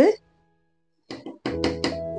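Talking ends, then a moment of dead silence at an edit cut, then talking again over background music with steady held notes.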